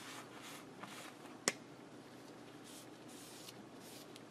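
A cloth being rubbed over a non-slip liner to dry it off: faint soft swishes in several strokes, with one sharp click about one and a half seconds in, the loudest sound.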